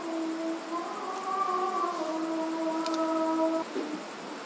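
Islamic call to prayer (azan) chanted by a muezzin over a distant mosque loudspeaker: long held notes with slow melodic turns, the last phrase ending shortly before the end.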